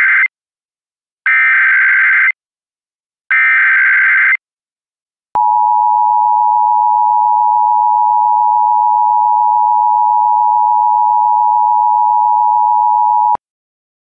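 Emergency Alert System SAME header: the end of one burst of warbling data tones, then two more bursts of about a second each, followed by the two-tone EAS attention signal held steadily for about eight seconds and cut off sharply. Together they mark the start of an emergency alert broadcast, here a child-abduction AMBER Alert.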